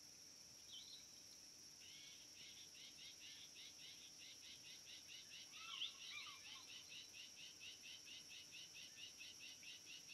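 Faint wild ambience: a steady high insect drone, joined about two seconds in by a rapid, evenly repeated chirping call of about four notes a second that runs to the end. Near the middle a single louder bird call with falling notes cuts through.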